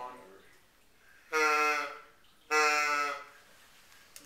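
Two short fawn bleats blown on a Primos Hardwood Grunter deer call with its reed set to the fawn pitch. Each is a steady, fairly high reed tone about half a second long, the second following about a second after the first.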